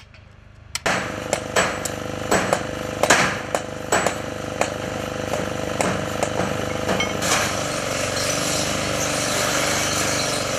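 Hammer-on-chisel strikes on stone, irregular and sharp, over a loud steady power-tool noise that starts suddenly about a second in. From about seven seconds a steady hissing grind takes over, typical of an angle grinder cutting a steel post and throwing sparks.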